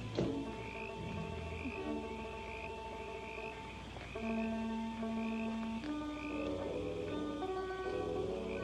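A chorus of frogs calling in a steady rhythm, about two calls a second, over an orchestral score of long held notes. There is a single sharp knock right at the start.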